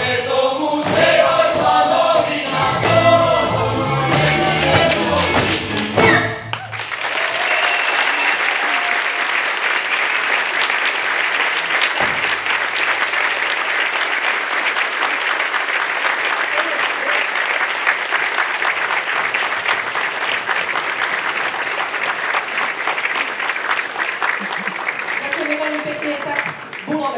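A folk ensemble singing with a fiddle band, the music ending abruptly about six seconds in. Steady audience applause follows for the rest.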